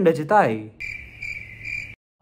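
A man's voice trails off with a falling pitch. About three-quarters of a second in, a high cricket chirp starts, a steady tone that pulses about twice a second, and it cuts off abruptly at the edit: an added comedy sound effect rather than crickets in the room.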